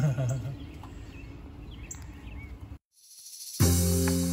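A short laugh trailing off, then the low, steady hum of honeybees from an exposed feral colony in a house soffit. Near three seconds in the sound cuts out completely, and background music with sustained notes starts just before the end.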